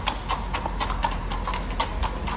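Hooves of a carriage horse pulling a horse-drawn carriage, clip-clopping on the street surface in an even walking rhythm of about four steps a second.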